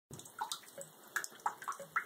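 Bathtub water splashing and dripping in small, irregular blips as an otter swims and paddles against a rubber duck.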